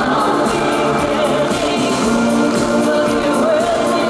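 Live pop song: a woman singing over a band with gospel-style backing vocals, played loud over a stadium PA and recorded from the crowd with poor, harsh sound.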